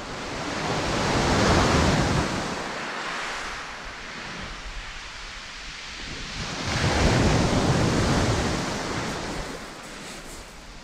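Waves breaking and washing up a shingle beach, in two surges about five seconds apart: the first peaks about a second and a half in, the second about seven seconds in.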